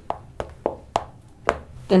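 A series of about five sharp taps or knocks on a hard surface, irregularly spaced and each with a short ringing tone.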